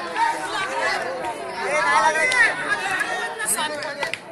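Many voices chattering and shouting over one another: a crowd of spectators and players calling out during play, with no single voice standing out.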